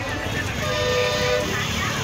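A vehicle horn sounds once, a steady tone lasting about a second, over crowd chatter and street noise.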